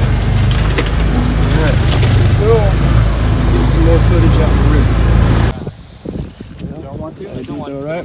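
Side-by-side utility vehicle driving a rough dirt trail, heard from inside the cab as a steady, loud engine and road rumble. It cuts off abruptly a little over halfway through, giving way to a much quieter outdoor scene with a voice.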